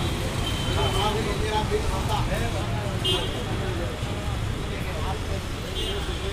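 Busy street-side eatery ambience: background chatter of many voices over a steady rumble of road traffic, with a few short high-pitched sounds around the middle and near the end.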